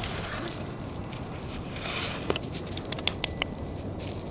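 Young puppies moving about, their paws and claws pattering and scrabbling on the floor, with a few light clicks between about two and three and a half seconds in.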